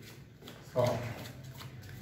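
A deck of playing cards being shuffled by hand, faint.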